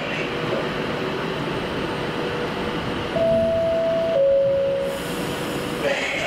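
Electric locomotive running slowly as it draws in with its coaches, with a steady rumble. About three seconds in it sounds a two-tone horn, a higher note followed by a lower one, about two seconds in all.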